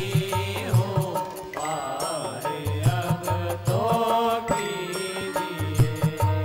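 Devotional Indian bhajan: a voice singing a chant-like melody over a steady drum rhythm and instrumental accompaniment.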